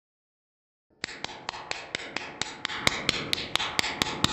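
Silence for about a second, then a cartoon spanking machine's clacking: an even run of about four sharp strokes a second, with crisper high clicks joining in near the end.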